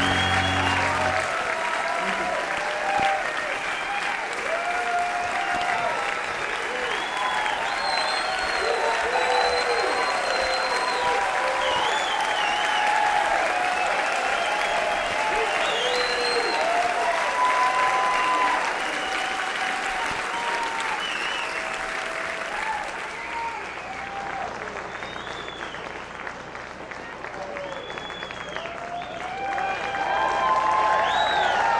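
A grand piano's last held chord dies away about a second in, and a theatre audience breaks into applause with cheering shouts. The applause thins out in the last several seconds, then swells again right at the end.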